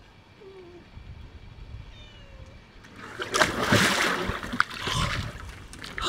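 Water splashing and sloshing in an inflatable paddling pool as a person lowers herself into it. The splashing starts about three seconds in, is loudest just after it starts, and swells again near the end.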